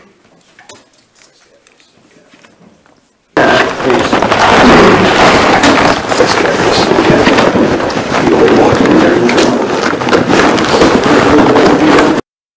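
Faint room noise with a few small clicks, then about three seconds in a sudden, very loud, harsh and distorted replay of an amplified recording, taken by the investigators for a deep voice saying "We don't want you here"; it runs on and cuts off abruptly at the end.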